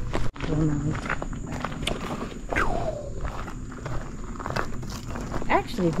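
Footsteps on a gravelly dirt forest trail, with brief faint voice sounds in between.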